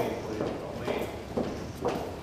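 Footsteps of several people walking on a hard floor, hard-soled shoes clicking in an uneven patter.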